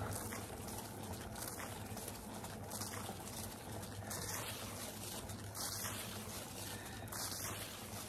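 Paint spinner turntable spinning at speed, a steady hum with a whoosh that swells about every second and a half; a little noisy.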